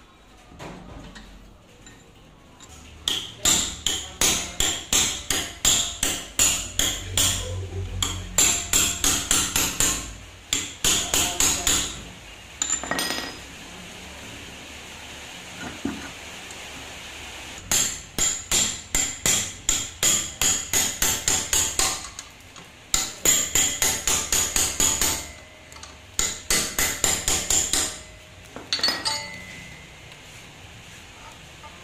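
Metal-on-metal hammer blows on a car's front shock absorber clamped in a steel vise, struck while it is being dismantled. The blows come about three a second, in runs of several seconds with short pauses between them.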